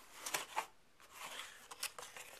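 Cardboard box lid being opened by hand: a faint rustle and scrape of cardboard in the first half second, then a couple of light clicks near the end.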